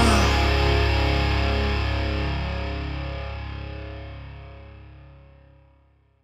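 The final distorted electric guitar chord of a nu-metal song ringing out with a heavy low end and fading steadily, dying away shortly before the end as the song finishes.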